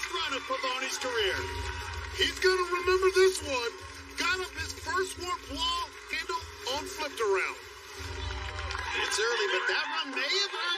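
Several excited people shouting and cheering at once, their voices overlapping.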